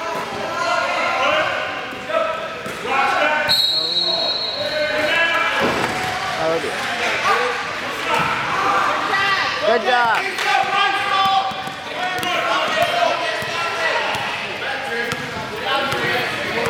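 A basketball bouncing on a hardwood gym floor amid indistinct shouting and chatter from players and spectators, in an echoing hall. A steady high whistle blast sounds about three and a half seconds in and lasts about a second and a half.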